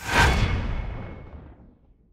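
Logo sting sound effect: a sudden deep hit with a bright hiss on top, fading away over about a second and a half.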